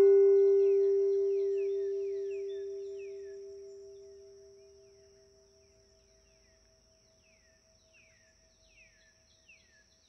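A struck meditation bell ringing with a clear tone and slowly dying away over about five seconds, one overtone pulsing as it fades. Faint short chirps with a falling pitch come and go over a steady high hiss.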